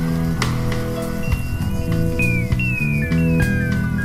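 Instrumental rock music: drums and a low bass line stepping between notes, under a high lead that slides down in pitch several times in the middle.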